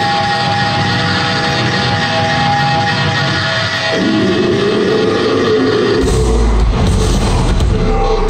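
Live metalcore band playing: distorted guitars ring out with held notes for the first few seconds. A heavier low end of bass and drums comes in about six seconds in.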